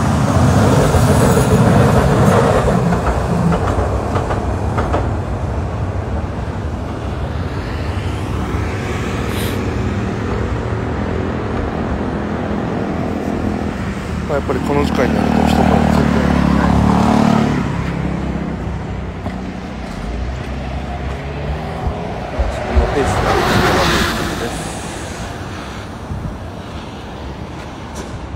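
Road traffic: vehicles passing one after another, each swelling and fading over a few seconds. The loudest passes come at the start, about halfway through, and about four-fifths of the way in.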